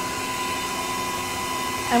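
Six-quart stand mixer running steadily with its paddle attachment, creaming butter: an even motor hum.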